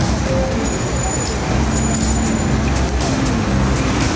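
City street traffic noise: a steady rush of passing road vehicles.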